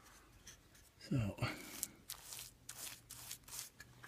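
Paintbrush bristles stroking paint onto wooden trim: several short, scratchy brush strokes in the second half.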